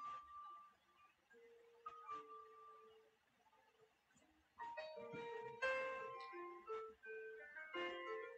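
Soft background music: a slow melody of single notes, each fading after it sounds. It stops for about two seconds in the middle, then picks up again.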